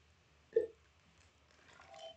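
A single short gulp about half a second in as a man swallows water from a plastic bottle, followed by faint light mouth and bottle sounds.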